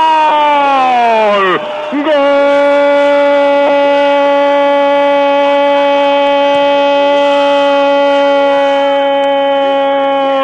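A radio football commentator's long drawn-out goal cry. A held shout falls away in pitch and breaks for a quick breath about two seconds in, then one steady, loud note is held for about eight seconds.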